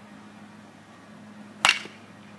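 A baseball bat striking a pitched ball once near the end, a single sharp crack with a brief ring.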